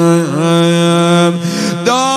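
A man's voice chanting a Persian rowzeh mourning lament into a microphone. He holds a long note that dips and wavers in ornamented turns. Near the end it breaks off briefly and a new, higher note begins.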